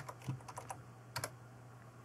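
Computer keyboard keys tapped in a few short clicks, typing a number into a dialog box.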